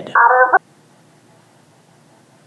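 A short telephone tone, about half a second, that cuts off suddenly as the phone line goes dead, followed by faint room tone.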